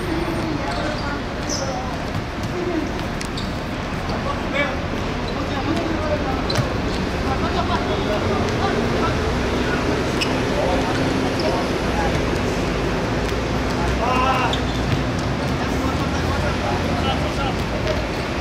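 Players shouting and calling to each other during a football match, with a few sharp knocks of the ball being kicked over a steady low background hum.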